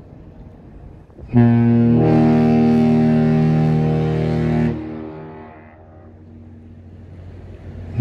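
Horn of the 1,004-foot laker James R. Barker sounding one long, low blast of about three seconds, starting a little over a second in, then dying away. A second blast begins right at the end.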